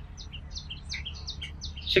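Small birds chirping: quick, short, high chirps, several a second, over a low steady rumble.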